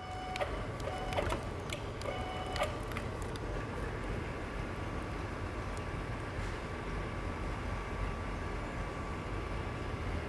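Steady machine hum from the electric vacuum pump of a suction-pad sheet lifter running as it carries a steel sheet. A few short beeps and clicks sound in the first three seconds.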